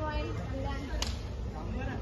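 A single sharp smack, like a hand slap, about halfway through, over short bits of shouted voices and a steady low rumble.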